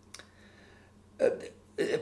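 A pause in a man's talk: a faint mouth click and a soft intake of breath, then a short throaty vocal sound just past halfway before his words start again.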